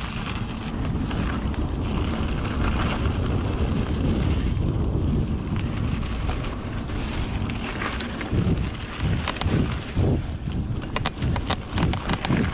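Mountain bike ridden fast down a dirt forest trail: wind rushing over the microphone over a steady tyre rumble, with the bike rattling and knocking over bumps. The knocks come thicker in the last few seconds.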